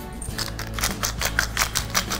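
A rapid run of light, crisp clicks and crackles, about six to eight a second, as seasoning is sprinkled by hand over shredded fresh cabbage in a stainless steel pot. Soft background music plays underneath.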